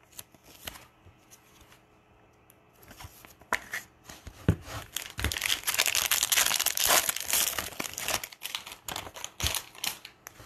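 Foil wrapper of a baseball card pack being torn open and crinkled by hand. It starts faintly, with a few light clicks, and the crinkling is loudest a little past the middle.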